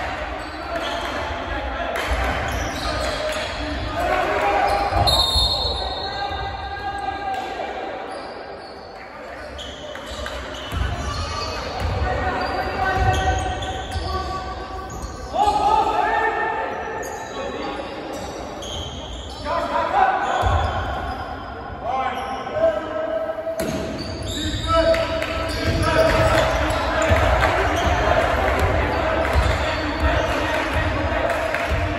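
Basketball dribbling on a hardwood gym floor, with voices calling out over it, all echoing in a large gymnasium.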